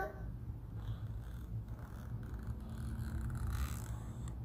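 A low, steady background rumble, with a faint rustle near the end.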